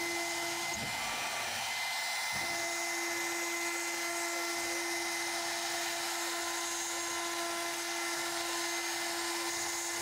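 CNC router spindle running at high speed with a small end mill cutting outlines into a thin black sheet: a steady whine over a cutting hiss. The main tone drops out for about a second and a half near the start, then comes back steady.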